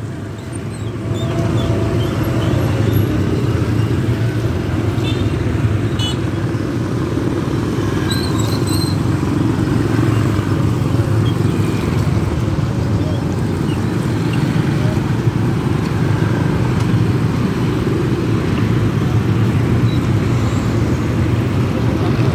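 Steady low rumble of road traffic, engines running, with a few faint ticks and high chirps over it.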